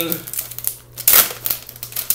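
Plastic bag of peat pellets crinkling as it is handled and shaken, loudest about a second in.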